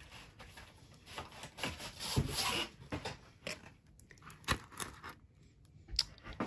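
Diamond painting canvases with plastic film covers rustling and rubbing as they are shuffled by hand, in uneven scrapes with a few short knocks, loudest about two seconds in.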